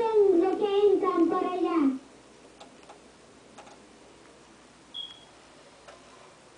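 A young boy's voice, high-pitched and drawn out, for about the first two seconds; then quiet room tone with a few faint clicks and one short, high chirp about five seconds in.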